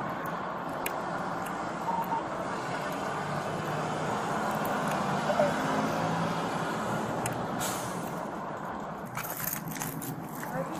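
Steady road-traffic noise from passing vehicles, swelling slightly about midway. Near the end come a few short knocks and rustles of the body camera being handled.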